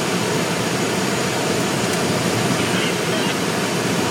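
Steady rush of air streaming past a glider's canopy, heard inside the cockpit as the glider climbs on an auto-tow.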